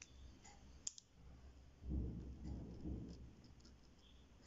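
Ballpoint pen drawing on paper: faint scratchy strokes and light clicks, with one sharper click about a second in. From about two to three seconds in comes a louder low rumble of the hand and paper moving on the desk.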